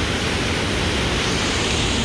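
Steady rushing of water released through the dam's partially open gates, heard from high on top of the dam.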